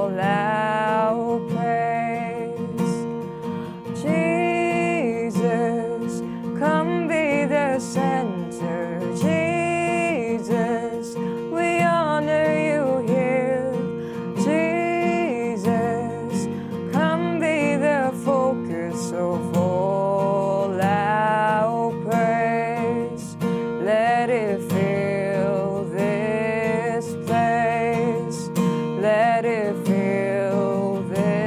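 A woman sings a worship song in 6/8 time over a steel-string acoustic guitar, which is capoed at the third fret so the song sounds in B-flat. The guitar plays continuously under a sung melody that breaks into phrases every second or two.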